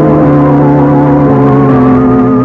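Organ music bridge: loud, sustained organ chords that shift twice, the radio drama's cue between scenes.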